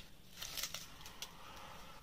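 Faint rustle of a paper sheet of temporary tattoos being handled and raised to the face, with a few light ticks.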